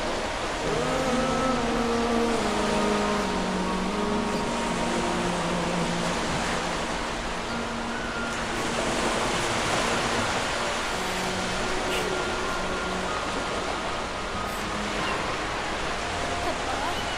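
Steady wash of ocean surf, with soft background music of long held notes.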